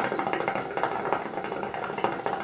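Hookah water bubbling steadily in the base as a long draw is pulled through the hose.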